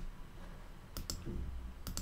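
Computer mouse button clicking as word tiles are selected: two quick double clicks of press and release, about a second in and again near the end.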